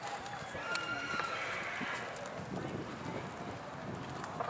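Faint, unintelligible voices in the background, with soft hoofbeats of a horse moving over sand footing.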